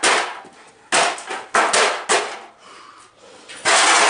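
A short sledgehammer smashing the parts of a broken desktop computer on a concrete floor: a series of about five hard, sudden blows at irregular intervals, with the loudest and longest crash near the end.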